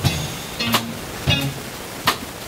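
A small jazz band playing live, recorded through a poor camera microphone: drum hits roughly every half second to second over bass notes and short chords.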